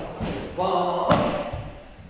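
Bare feet thudding on floor mats as a karateka steps and hops forward, a few dull thumps, with a man's voice in between.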